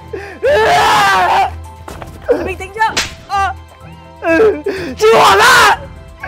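Distressed shouting and wailing voices in two long, strained cries, over background music, with a sharp smack about three seconds in.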